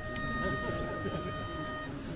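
Barbershop pitch pipe blown to give the chorus its starting note: one steady, unwavering note lasting nearly two seconds that cuts off just before the end, over low crowd chatter.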